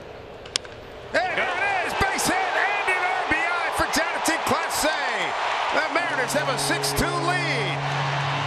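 A wooden bat cracks once against a pitched baseball about half a second in. About half a second later a stadium crowd breaks into cheering, with whoops and shouts, and keeps it up as the run scores on the hit. A steady low tone, likely the stadium's music or organ, joins about six seconds in.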